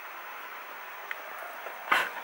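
Steady background hiss of room noise with a faint click about a second in, and a short rustling burst near the end.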